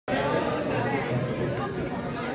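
Many young people talking at once: overlapping chatter with no single voice standing out, cutting in abruptly at the start.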